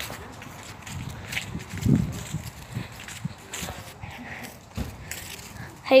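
Handling noise from a phone being passed between hands with a finger over it: rubbing and scattered bumps, the loudest about two seconds in.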